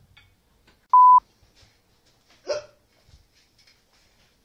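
A single short electronic beep at one steady pitch, loud, lasting about a quarter of a second, about a second in; a beep tone edited into the soundtrack.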